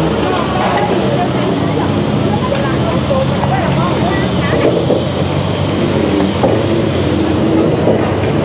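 Heavy construction machinery's engine running steadily, with the chatter of a crowd of people over it.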